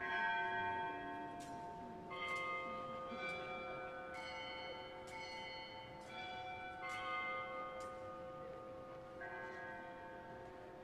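Bells struck about ten times at uneven spacing, each strike ringing on with several pitches, rung at the elevation of the consecrated host during the Mass.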